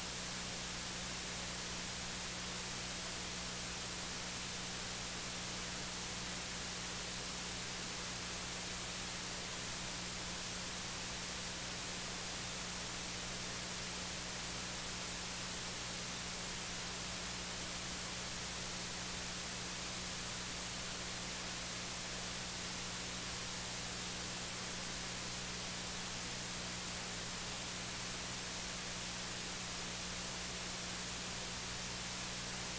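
Steady electronic hiss with a low, steady hum underneath and no other events: the noise floor of an open audio feed with no one at the microphones.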